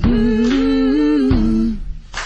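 A voice humming one long held note that wavers a little in pitch, over a deep bass that cuts off partway through, the note ending shortly after.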